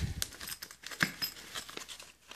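Hands handling a zippered nylon insulated bag compartment: a zipper pulled open and the fabric and foil lining rustling, with a couple of light clicks.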